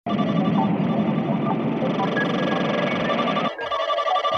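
Opening of an electronic music track: a dense, noisy layered synth texture that cuts off about three and a half seconds in, where a kick drum beat comes in.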